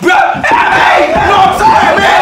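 Several people yelling and screaming over each other during a scuffle, loud and without a break.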